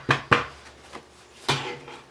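Spiral-bound sketchbook tapped down on a tabletop: a few sharp knocks, two close together near the start and another about a second and a half in.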